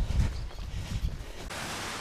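Wind buffeting the camera microphone outdoors, a low uneven rumble. About one and a half seconds in it gives way to a steadier hiss.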